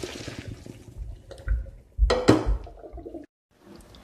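Hot pasta water and spaghetti poured from a pot into a plastic colander in a sink, water rushing and draining. A few louder thumps come around two seconds in, and the sound cuts off abruptly just after three seconds.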